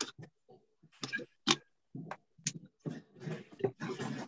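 Kitchen handling noise: a paper package crinkling and rustling, with irregular small clicks and knocks, coming and going in short patches and thickest near the end.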